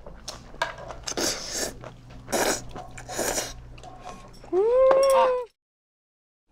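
A person slurping up long, saucy strands of food in several quick noisy sucks. About four and a half seconds in comes a loud, high tone that rises and then holds for about a second before cutting off abruptly.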